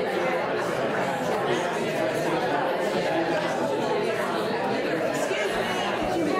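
Many people talking at once in pairs: a steady hubbub of overlapping conversations across a large room, with no single voice standing out.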